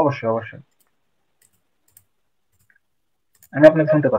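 Brief snatches of a voice at the start and again near the end, with dead silence between them, cut off suddenly as if gated, broken only by one faint click about two seconds in.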